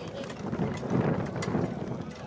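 Wind buffeting the microphone in a low rumble, with a few faint hoof strikes from harness horses walking past on grass.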